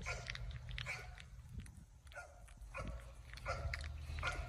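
Four-week-old Cane Corso puppies at a raw-food bowl: wet chewing and smacking clicks as a puppy eats, with a few short puppy whines.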